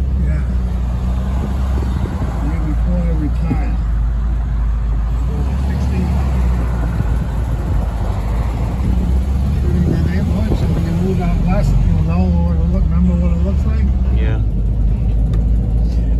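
Engine of an old van running steadily as it drives, a loud low drone inside the cab, with voices talking over it.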